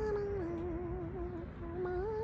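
A woman humming a few drawn-out notes: a held note, then a lower one that wavers, a brief break about one and a half seconds in, and a higher note to finish.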